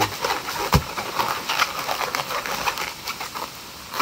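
Latex modelling balloon squeaking and rubbing in the hands as it is squeezed and twisted into a bubble, with one sharp knock just under a second in.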